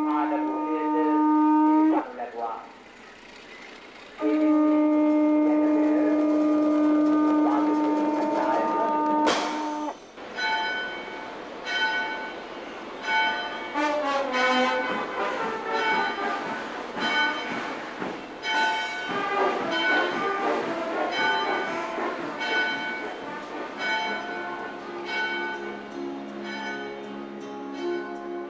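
Church bells ringing. At first one long, steady ringing tone is cut off abruptly twice; from about ten seconds in comes a run of quick, irregular chimes.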